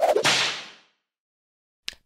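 A whip-like whoosh transition sound effect that starts suddenly and fades away in under a second. A short click follows near the end.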